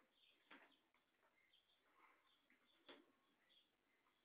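Near silence, with faint high chirps scattered throughout and two soft taps, about half a second in and near three seconds.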